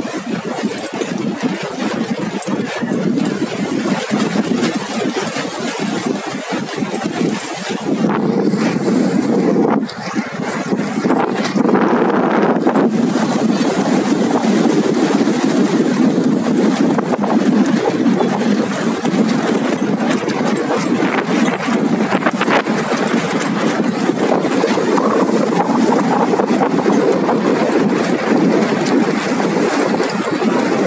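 Motorboat engine running steadily with water noise, getting louder about ten seconds in.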